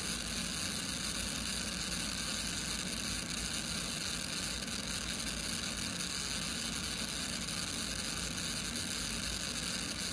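Steady road and wind noise inside a Dodge Scat Pack 392 police car running at about 150–160 mph, with its 6.4-litre Hemi V8 under it.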